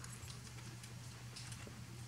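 Faint clicks and taps of fingers handling a small plastic transforming robot toy, a few light ticks in the second half, over a low steady hum.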